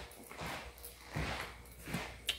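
Faint footsteps on a hardwood floor: a few soft, low thumps under a quiet hiss.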